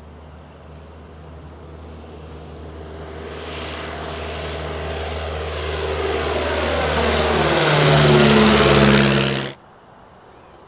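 De Havilland Tiger Moth biplane's four-cylinder Gipsy Major engine and propeller droning as it comes in low, growing steadily louder and loudest as it passes close, then cutting off suddenly near the end.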